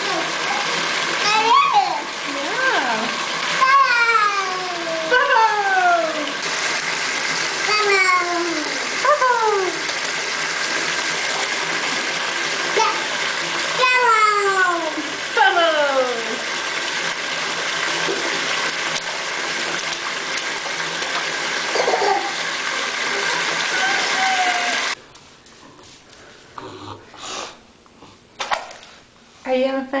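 Bathtub spout running full into a filling bubble bath, a steady rush of water, with a toddler's repeated falling-pitched vocal calls over it. The water sound cuts off abruptly about 25 seconds in, leaving only faint babble.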